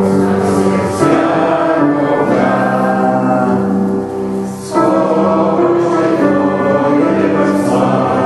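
A choir singing a slow hymn in long, held notes, with a short break between phrases a little past the middle.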